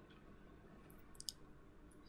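Near silence: faint room tone, with two or three short, sharp clicks a little past a second in, from a computer mouse clicking to bring up the next line of a slide.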